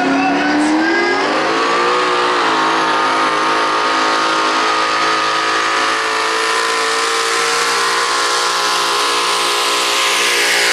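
Turbocharged diesel pickup truck pulling a sled under full load. Its engine climbs in revs over the first two seconds, then holds at a steady high pitch as the truck works down the track.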